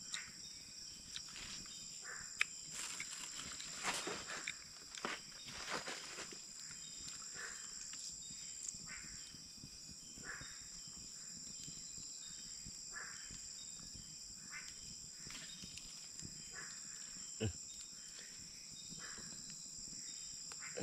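Steady, high-pitched chorus of night insects such as crickets, with scattered close-by clicks and rustles from hands handling a knife and food.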